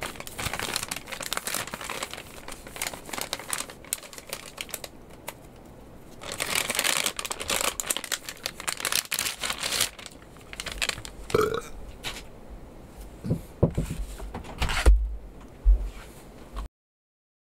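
Plastic and foil MRE packaging being crinkled and torn by hand, loudest in a stretch in the middle, followed by a few dull knocks on the table near the end.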